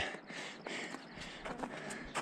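Slow, careful footsteps on a firm, old snowfield: a few soft, uneven steps over a faint hiss.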